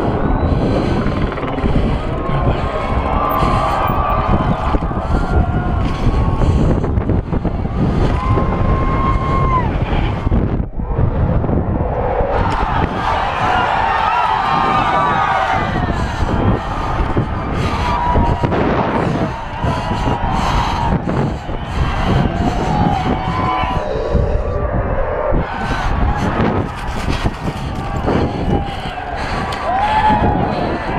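Mountain bike descending steep dirt and rock at speed: loud wind on the camera microphone, with the bike and tyres rattling over the rough ground, and a brief lull about eleven seconds in.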